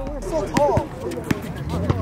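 A basketball bouncing and sneakers hitting an outdoor concrete court, heard as several sharp, irregular knocks, with a brief shout from a player about half a second in.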